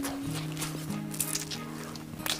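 Crunchy chewing of crispy battered fried squid: short, sharp crackles at irregular intervals. Soft background music with held notes plays under it.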